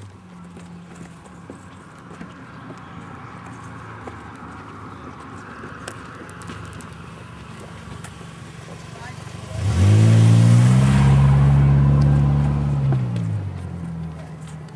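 A passenger car driving close past, its engine note climbing as it speeds up, holding for a few seconds, then dropping away as it goes by near the end.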